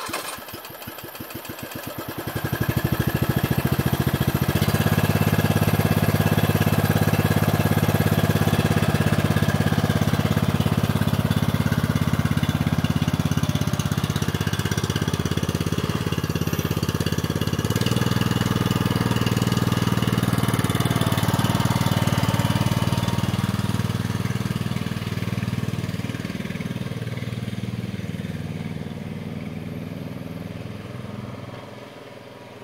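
Briggs & Stratton 7 hp vertical-shaft single-cylinder engine catching suddenly, running rough for a couple of seconds, then settling into a loud, steady run. It fades over the last few seconds as the machine drives away.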